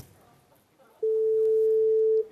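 Telephone ringing tone as heard by the caller: one steady beep of a little over a second, starting about a second in. A short click right at the start.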